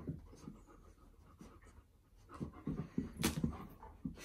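A Siberian husky and an Alaskan malamute playing, with dog panting and soft play noises. It is faint at first and busier in the second half, with a sharp click about three seconds in.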